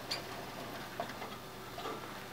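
A few light, irregular clicks and ticks from hamsters moving about in a plastic cage and exercise wheel.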